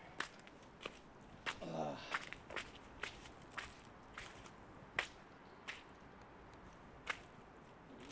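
Footsteps of a person walking slowly on snowy, muddy ground: sharp, separate steps at an uneven pace over a faint hiss.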